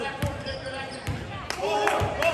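A basketball being dribbled on a hardwood gym floor: a few sharp bounces at an uneven pace, with faint voices underneath.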